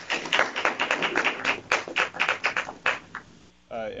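A small audience applauding: a scattering of separate hand claps that stops about three seconds in.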